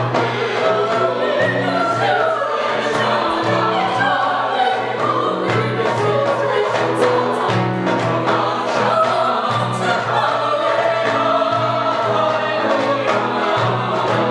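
Mixed choir of men's and women's voices singing a piece in parts, with held notes in several voices at once.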